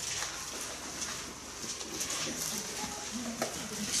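Thin Bible pages being turned by hand at a lectern: soft rustles and light paper ticks, with a faint low murmur in the second half.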